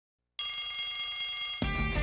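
A bell rings for about a second, then theme music with drums and guitar comes in suddenly.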